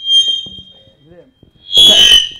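PA microphone feedback: a steady high-pitched ring that fades over the first second and flares up again near the end together with a loud noisy burst.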